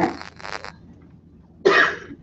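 A person coughing: a short cough about half a second in and a louder one near the end.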